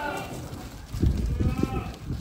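Sojat goats bleating in a herd: one long bleat trails off at the start and a fainter one follows in the second half. About a second in, the loudest sound is a run of low thumps and scuffing.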